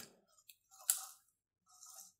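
Faint handling sounds from a hand tool working the chain adjuster on a Stihl chainsaw, with one sharp click about a second in.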